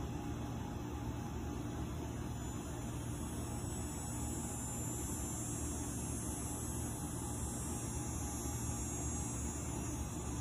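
Steady outdoor background noise: a constant low hum under an even hiss, with no distinct events.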